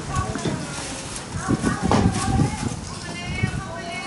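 Background voices of several people talking, with irregular clacks and knocks in between.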